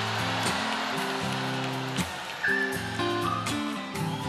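Live band playing soft accompaniment: held chords that change every second or so, with a few short higher notes in the second half.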